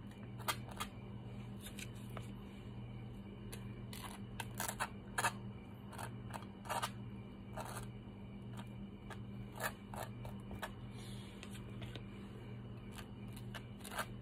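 Metal spoon scraping across toasted bread as black garlic paste is spread on it, a string of short scrapes at irregular intervals. A steady low hum runs underneath.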